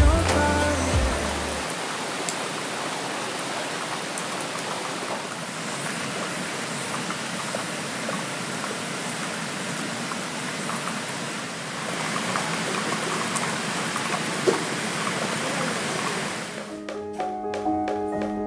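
Steady rain falling, an even hiss with scattered drop taps. A song fades out in the first couple of seconds, and a new piece of music begins near the end.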